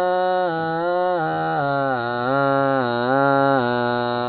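A single male voice chanting a slow, melismatic Ethiopian Orthodox Lenten hymn, holding each syllable in long, ornamented, wavering notes. The melody steps down to a lower note about a second and a half in.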